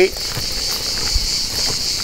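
Steady, high-pitched chirring of insects.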